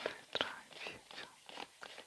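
Playing cards being shuffled by hand: a run of soft, irregular clicks and rustles as cards slide off and slap against one another.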